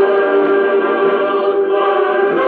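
Recorded choral music: a choir singing long held notes together, moving to a new chord near the end.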